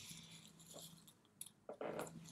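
Faint breathing and mouth noises from a boy with a mouthful of dry coffee granules, a breathy hiss at first and a small click later.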